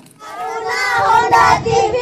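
Children's voices singing out together, a short phrase with held notes.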